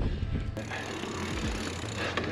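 Riding noise of a mountain bike on a dirt trail picked up by a handlebar-mounted action camera: an even hiss of tyres and air over a steady low hum, with a sudden shift in the sound about half a second in.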